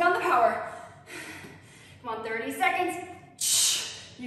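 A woman's voice speaking in short bursts, with a short hiss near the end.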